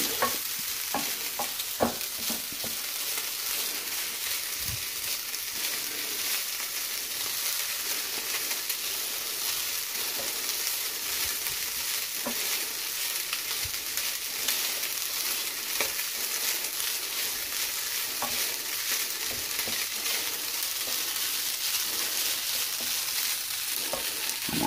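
Egg fried rice sizzling steadily in a hot frying pan as it is stirred with a wooden spoon, the spoon scraping and tapping on the pan now and then, most often in the first couple of seconds.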